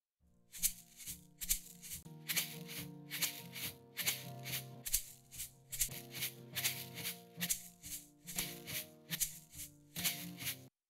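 Shaker playing a steady rhythmic pattern of strokes in a folk song mix, with sustained pitched instruments underneath; it starts about half a second in. The shaker is saturated with Native Instruments Dirt to soften it, so it sounds lower and bigger, almost as if tuned down.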